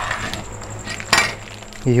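A cleaver cutting into the plastic wrapper of a pack of hot dogs on a wooden cutting board, with crinkling and scraping, then one sharp metallic knock of the cleaver about a second in.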